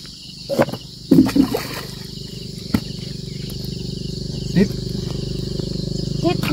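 Steady insect buzz under a low drone that grows louder from about two seconds in, with a few short voice sounds and a faint click in between.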